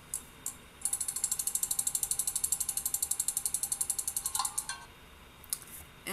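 Online random name-picker wheel spinning: a rapid, even run of ticks, about fourteen a second, that stops a little over four seconds in as the wheel lands on the next name.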